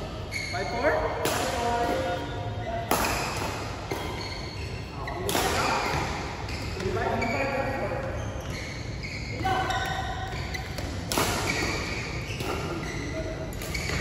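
Badminton rackets striking the shuttlecock in a rally, a sharp hit every two or three seconds, echoing in a large indoor hall, with voices in the background.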